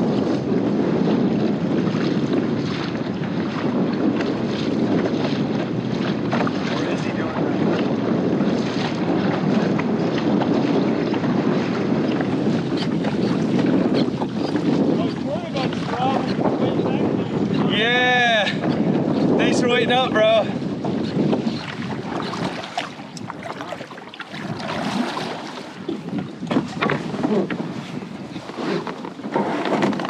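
Wind buffeting the microphone over water washing along a moving kayak's hull. The wind noise eases about two-thirds of the way through. Two short calls that arch up and down in pitch come a little past the middle.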